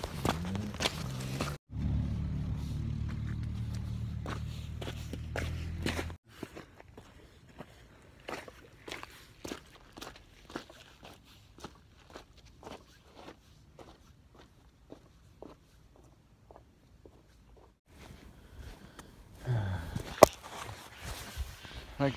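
Footsteps on a stony track at an even walking pace, about two steps a second, after a few seconds of a steady low hum. The sounds change abruptly where clips are cut together.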